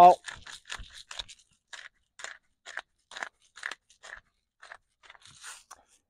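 Hand-twisted salt grinder grinding salt: a string of short scratchy grinding strokes, quick at first, then about two a second.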